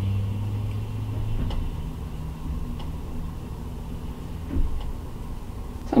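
A steady low mechanical hum, loudest in the first second and a half and then dropping to a lower rumble, with a few faint ticks and a soft thump near the end.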